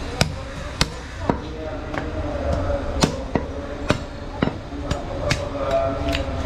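Butcher's cleaver chopping goat head meat on a wooden chopping block: sharp chops at irregular intervals, a pause of over a second after the first few, then a quicker run of strikes.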